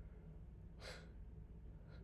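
Near silence, with one faint breath out, a sigh, about a second in.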